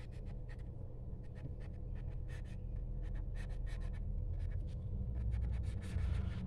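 Marker pen writing on paper on a clipboard: a quick, irregular run of short strokes, over a steady low hum.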